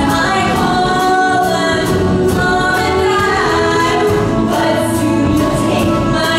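Musical-theatre ensemble singing in chorus over a live pop band of keyboard and electric guitars, with a steady beat.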